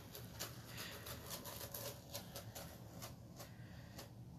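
Adhesive mesh stencil transfer being peeled off a sign board: faint, irregular crackling and rustling as the sticky screen lifts away.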